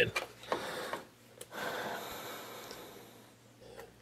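Faint handling sounds as a controller backed with self-adhesive hook-and-loop Velcro is pressed into place: a small click about a second and a half in, then a soft rustle that fades away.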